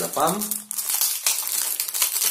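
Cellophane wrap crinkling as it is pulled off a perfume box, a dense run of fine crackles starting about half a second in.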